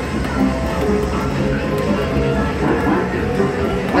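Arcade game music: a steady, busy mix of electronic tunes and jingles from the game machines.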